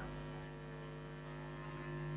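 Faint, steady electrical hum in the recording: a ladder of evenly spaced low tones that holds constant.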